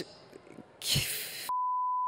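A broadcast censor bleep: a single steady, pure beep tone with the rest of the audio muted beneath it, starting about three-quarters of the way in. Just before it there is a short burst of hiss-like noise.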